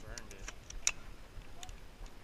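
A few small, sharp clicks and rattles from an AR-style rifle being handled, the loudest a little under a second in. A faint voice is heard near the start.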